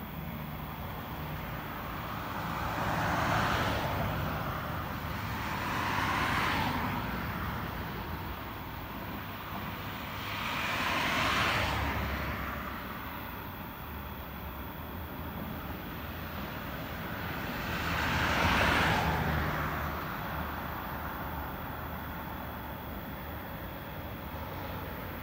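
Road traffic: vehicles pass by four times, each one's tyre and engine noise swelling and fading over a couple of seconds, over a steady low hum.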